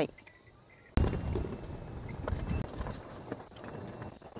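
Wind buffeting an outdoor microphone: an irregular, rumbling noise that starts abruptly about a second in and carries on.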